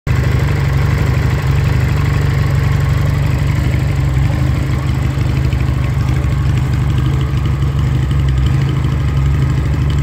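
Hunter Motorcycles Outlaw 400 (Regal Raptor Spyder 350) cruiser engine idling steadily through its standard stock exhaust, a low, even idle with no revving.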